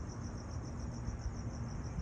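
Insects chirping in a steady, high, finely pulsing trill, over a faint low background rumble.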